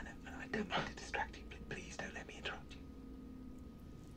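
Quiet, hushed speech from the playing episode's dialogue, stopping about two and a half seconds in.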